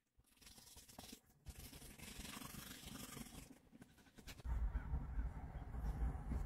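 Manual toothbrush scrubbing over teeth and tongue, a soft, rapid, scratchy brushing. About four and a half seconds in, a louder low rumble and a few knocks take over.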